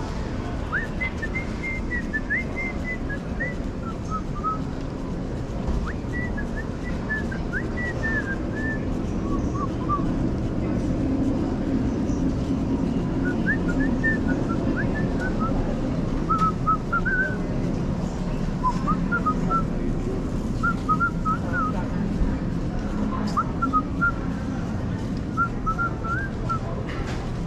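A person whistling a tune in short phrases of quick notes, over a steady background hum of a large store.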